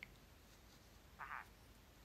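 Near silence: room tone in a pause between sentences, with one brief faint sound a little after a second in.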